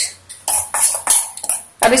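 A pepper shaker shaken several times over a bowl of batter: a quick run of short, dry rattling shakes.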